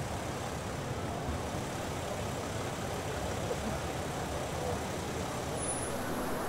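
Steady street noise with the low, even rumble of vehicle engines running.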